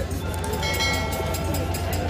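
Busy street-market background: a steady low rumble with faint voices. A steady high tone with overtones sounds for about a second near the middle.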